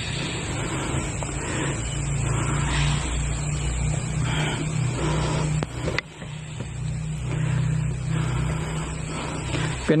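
Played-back soundtrack of a night-time video: a steady low hum and hiss with faint, indistinct voices, broken by a short dip about six seconds in.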